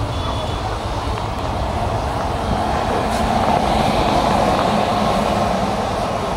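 Goods train wagons rolling past on the adjacent track, a continuous rumble of steel wheels on rails that grows louder about three seconds in and eases near the end.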